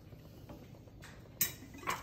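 Two short clinks of a kitchen utensil against a stainless steel soup pot, the first about a second and a half in and the second just before the end.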